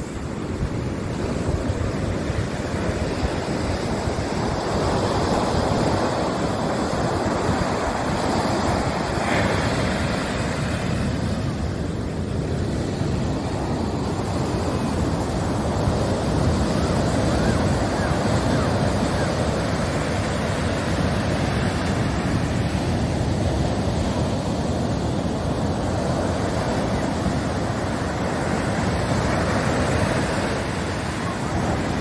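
Ocean surf breaking and washing up a sandy beach: a continuous rushing wash that swells and eases every few seconds. Wind buffets the microphone with a low rumble.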